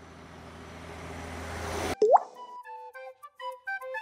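Cartoon sound effects: a propeller-plane engine drone growing steadily louder, cut off about two seconds in by a quick rising bloop. A light flute melody then begins.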